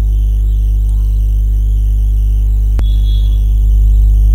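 Background music: a steady electronic track, heavy in the bass, with a single sharp click about three seconds in.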